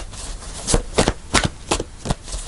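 Tarot deck being shuffled by hand, the cards snapping against each other in short, uneven strokes about every third of a second.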